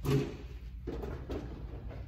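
Two short knocks about a second in, over a steady low hum.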